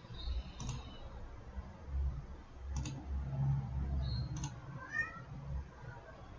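Three computer mouse clicks about two seconds apart, with a few short faint high chirps around them.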